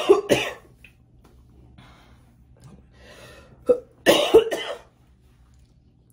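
A woman in a coughing fit: two hard coughs at the start, a couple of seconds of quieter breathing and throat noises, then another burst of several coughs about four seconds in.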